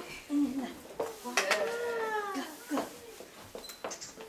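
A young child's wordless voice: a short sound early on, then one long drawn-out call that rises and falls in pitch. A few light clicks near the end come from plastic eggs knocking on the hard wooden floor.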